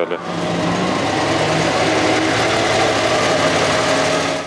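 PAZ school bus engine running steadily close by: a loud, even drone that holds without revving up or down.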